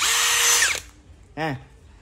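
Dekton brushless cordless drill run briefly with no load, its motor and chuck spinning with a steady whine for under a second before it is released and stops abruptly.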